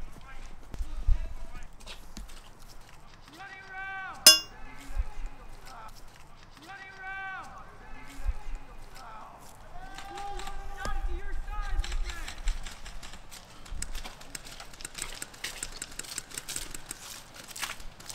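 Voices calling out in long, drawn-out shouts three times, with a single sharp crack about four seconds in. From about twelve seconds on there are quick footsteps and gear rustling on muddy ground.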